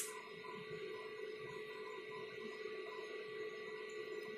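Faint steady electrical hum with a few constant tones, the background noise of the recording; no scrape of the spoon is heard.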